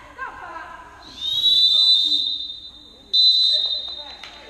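Referee's whistle blown twice: a long blast about a second in, then a second blast starting sharply near the end, both at a steady high pitch.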